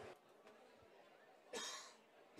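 Near silence, broken about one and a half seconds in by one short, breathy burst of noise.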